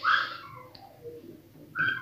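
Plastic carrier bag rustling in two short bursts as groceries inside are rummaged through, with faint short whistle-like notes stepping downward in pitch after each burst.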